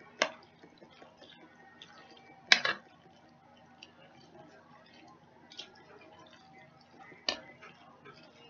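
A spoon knocking sharply against a mixing bowl three times while a thick macaroni mixture is stirred; the middle knock is the loudest, with faint small clicks and scrapes in between.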